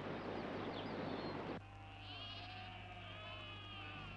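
A steady hiss of outdoor ambience that cuts off abruptly about one and a half seconds in, followed by faint sheep bleating, several overlapping calls.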